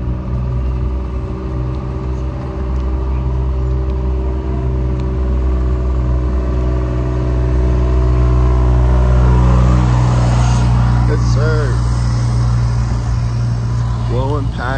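A motor vehicle's engine running steadily nearby, swelling in level toward the middle and then easing off. A short vocal sound comes near the end.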